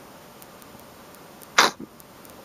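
A person's short, sharp breath noise, like a stifled sneeze, about one and a half seconds in, with a smaller one right after, over faint room hiss.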